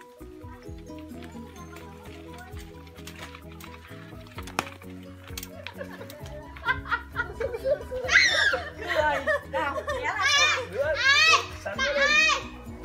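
Background music with long held notes. From about halfway, several high-pitched voices laugh and squeal excitedly as stream fish nibble their bare feet.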